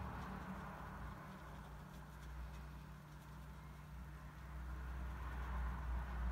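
A low, steady hum in a quiet room, with nothing louder over it.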